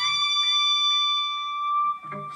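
Electric guitar: a note on the high E string bent a step and a half up from the 19th fret, reaching the pitch of the 22nd fret right at the start. It is then held steady without vibrato and cut off about two seconds in.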